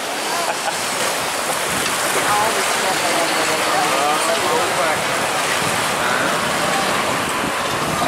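A steady rush of churning whitewater around a river-rapids ride raft, with riders' voices faint in the background.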